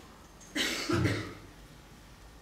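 A man's short cough in two quick bursts, about half a second in, close to a headset microphone.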